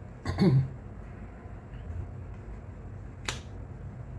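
A brief vocal murmur just after the start, then a low steady hum with one sharp click about three seconds in: a tarot card tapped down onto the table.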